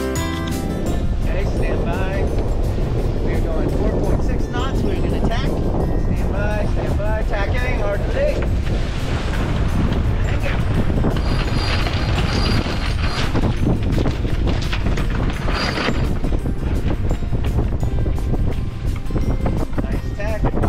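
Heavy wind buffeting the microphone aboard a sailboat under sail with its engine off, with water rushing along the hull in choppy sea.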